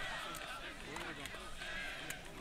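Many voices shouting and calling at once, faint and overlapping: players and spectators at a football match celebrating a goal.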